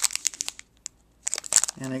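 Crinkling and crackling of a clear plastic candy blister pack being handled, in two short spells with a brief near-silent pause between them.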